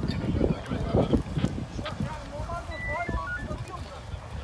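Indistinct voices calling out, with a rough rumble on the microphone in the first half and short wavering calls in the second half.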